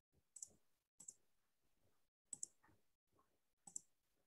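Four faint, sharp clicks from a computer, about a second apart, some of them doubled, over near-silent room tone.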